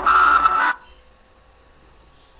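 Skype call tone: two short electronic notes, the second higher and louder, ending abruptly less than a second in. The call is still ringing through, just before it is answered.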